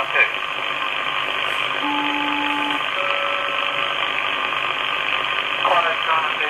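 HF receiver hiss from an R-390A with a CV157 single-sideband adaptor tuned to an aeronautical HF channel. About two seconds in, two tones sound together for about a second, then after a short gap a second, higher pair sounds for about a second: a SELCAL two-tone call from the ground station to an aircraft.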